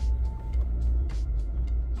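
Low, steady vehicle rumble heard inside a car's cabin, with a brief faint tone in the first half-second and a few faint clicks.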